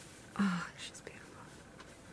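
A brief soft vocal murmur from a woman about half a second in, followed by faint rustling as hands settle a knitted bonnet on a doll's head; otherwise quiet room tone.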